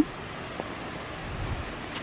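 Faint, steady outdoor background noise in a wooded river gorge, with a brief low rumble about one and a half seconds in.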